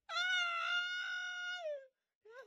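A long, high-pitched wailing cry held on one note for nearly two seconds, dropping in pitch as it ends.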